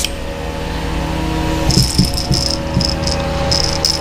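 A few short hissing spurts of an airbrush in the second half, mixed with light handling rattles and knocks, over a steady low hum.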